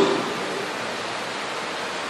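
A steady, even hiss of background noise in a pause between spoken phrases, with no other sound.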